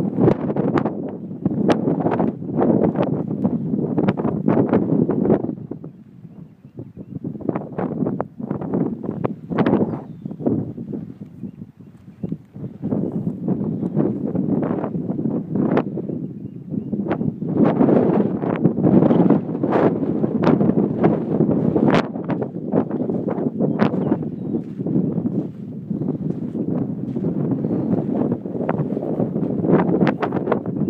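Wind buffeting the microphone in uneven gusts, with scattered crackles. It eases briefly about six seconds in and again about twelve seconds in.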